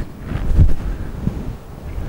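Marker pen writing on a whiteboard, with low rumbling and thumps of clothing rubbing on the microphone as the writer moves and turns from the board, loudest about half a second in.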